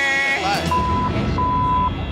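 Two steady censor bleeps of the same pitch covering swearing, the first about half a second long and the second a little longer, starting under a second in.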